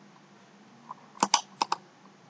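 Computer mouse clicks: two quick pairs of sharp clicks a little after a second in, as right-click context menus are closed and opened.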